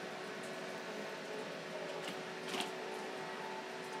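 Quiet, steady background hum and room tone, with a faint brief sound about two and a half seconds in.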